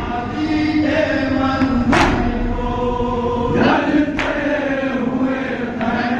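A group of men chanting a noha (mourning lament) in unison, their long sung lines rising and falling, with a few sharp slaps of hands on chests (matam) cutting through.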